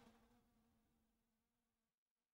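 Near silence: faint room tone with a low steady hum that fades away over the two seconds.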